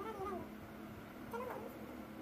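Two short, faint animal calls, each gliding up and down in pitch, one near the start and one about halfway through.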